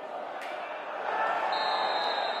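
Football stadium crowd noise with shouting voices, a sharp knock about half a second in, and a referee's whistle: one high, steady blast starting about a second and a half in.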